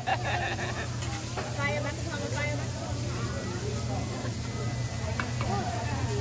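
Busy restaurant chatter from many voices over a steady low hum. A few metal clinks of a hibachi chef's spatula on the steel griddle come near the start, about a second and a half in, and about five seconds in.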